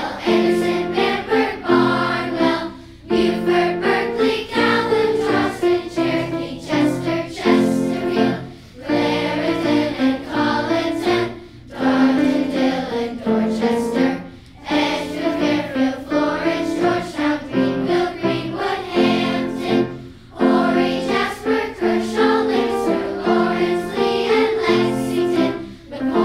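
Children's choir singing a song that lists the names of South Carolina's counties, in sung phrases with short breaks between them.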